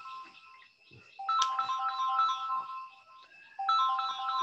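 A phone ringtone: a short electronic melody of quick, high notes. It plays in phrases of about two seconds with a brief pause between them, a second phrase starting just before the end.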